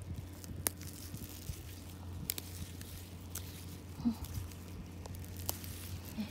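Quiet handling sounds of someone moving through leafy plants on dry soil: a few scattered light clicks and rustles over a steady low hum.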